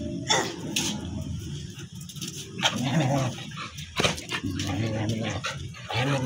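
Dogs barking and whimpering: two sharp barks in the first second, then whiny, wavering calls near the middle and another sharp bark about four seconds in.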